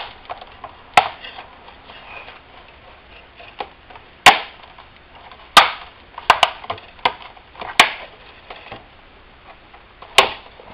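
Sharp plastic snaps as the front bezel of an Asus X44H laptop's screen lid is pried off with a plastic spudger, its clips popping loose one at a time. One snap comes about a second in, then a run of them from about four to eight seconds, the loudest at about four seconds.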